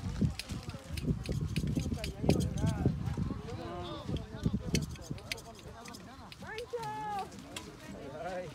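Indistinct voices of farmworkers talking in the field. Under them is an uneven low rumble, heaviest in the first five seconds, with many scattered sharp clicks and rustles.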